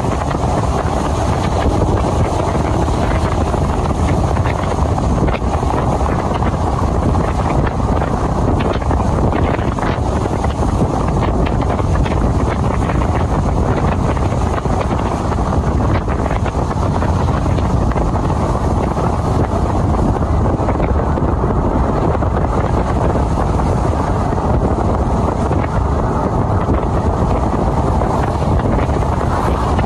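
Steady wind rushing over the microphone of a moving vehicle at road speed, with road and engine noise beneath it.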